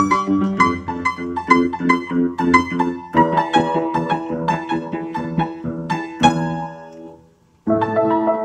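Old upright piano, out of tune, played in quick strings of notes and chords. A chord struck about six seconds in rings and fades away, and the playing starts again just before the end.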